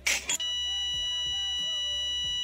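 A short noisy burst, then a steady electronic beep sound effect held for about two seconds over quiet background music.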